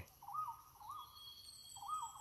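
Wild forest birds calling faintly: a pair of short mid-pitched rising-and-falling notes just after the start and another pair near the end, with thin high whistles in between.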